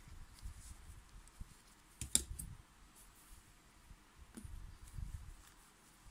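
Soft rustling and handling of polyester fibre stuffing being packed into a crocheted amigurumi leg and pushed in with the tip of a pair of scissors. A sharp click about two seconds in, and a fainter one a little after four seconds.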